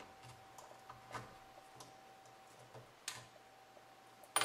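Faint ticks and scratches of a small screwdriver picking hardened potting material out of a tire pressure sensor housing, with two louder clicks about a second in and about three seconds in.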